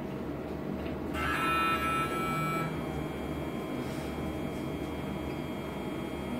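X-ray machine sounding its exposure tone: a high electronic beep of several steady pitches, starting about a second in and lasting about a second and a half, over a steady low room hum.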